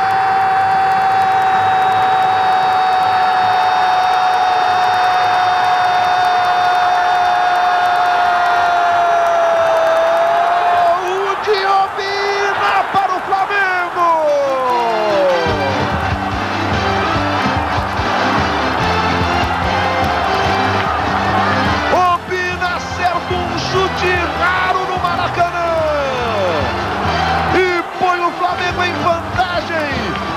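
A football commentator's long drawn-out "gol" shout, held on one note for about ten seconds over a cheering stadium crowd. After that, music with a heavy bass line plays under the crowd noise.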